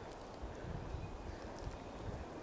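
Faint, soft low thuds with a little rustling, several in two seconds: footsteps and handling noise from someone walking with a handheld camera through ground cover.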